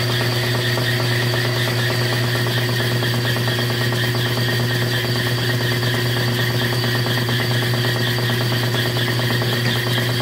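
Borg Warner Velvet Drive 71C-series marine transmission running on a belt-driven test stand, shifted into reverse for a pressure check: a steady mechanical hum with several held tones and a fast, faint rattle, unchanging throughout.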